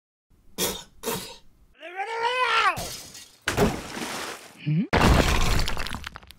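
Cartoon sound effects: two sharp knocks, a long pitched sound that rises and then falls, and a loud breaking, shattering crash in the last second.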